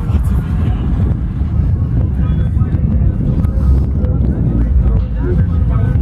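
An art car built on a motor vehicle drives away, its engine giving a loud, steady low rumble, with faint music and voices mixed in.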